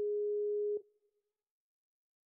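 Skype ringback tone of an outgoing call that has not been answered: one steady pure tone that cuts off under a second in.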